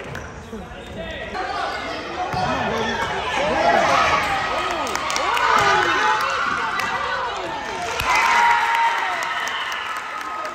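Indoor basketball game: a basketball bouncing on the hardwood court and sneakers squeaking, over spectators' voices, which grow louder about eight seconds in.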